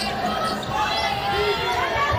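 A basketball being dribbled on a hardwood court, a run of low thumps, with voices in the arena around it.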